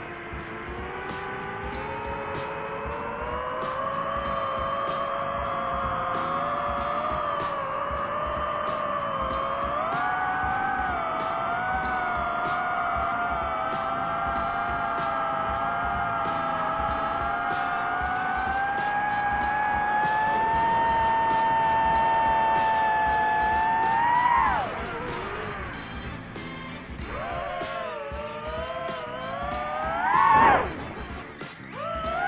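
DJI FPV drone's motors and propellers whining in flight, the pitch rising and falling with the throttle. The whine holds fairly steady, then swoops up and drops sharply a few seconds before the end, dips, and climbs again at the very end.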